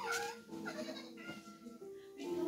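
A short high cry that dips in pitch and rises again, then a second shorter one, over faint music with held notes.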